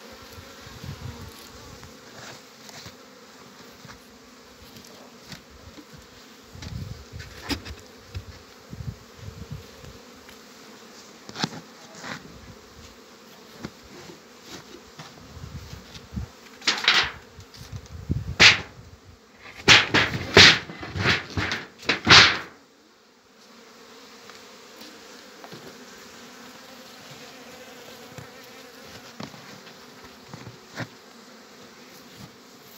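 Honeybees buzzing steadily around open wooden hives. Between about 16 and 22 seconds in comes a burst of loud knocks and scrapes from the hive box being handled.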